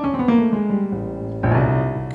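Solo piano fill between sung phrases: a run of notes falling in pitch, then a new chord struck about a second and a half in and held.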